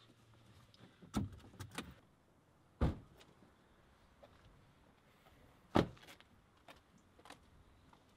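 Car doors opening and being shut: a few latch clicks about a second in, then two loud door slams about three seconds apart, followed by a few light footsteps.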